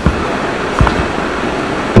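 Steady room noise and hiss with no speech, broken by a few faint low knocks.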